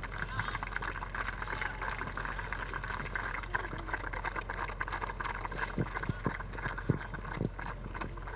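Applause: a steady patter of many hands clapping, with a low electrical hum underneath.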